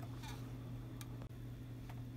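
Two light clicks about a second apart over a steady low hum, as the plastic smoke detector is turned over in gloved hands.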